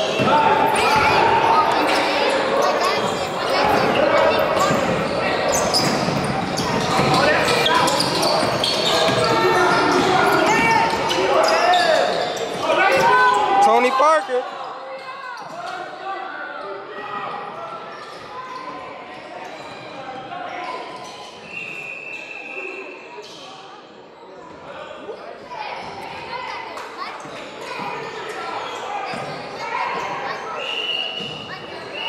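Basketball game in a large echoing gym: a ball bouncing on the hardwood court, sneakers squeaking, and spectators talking and calling out, loud for the first half and dropping abruptly about halfway through. A short, high whistle blast sounds about two-thirds of the way in.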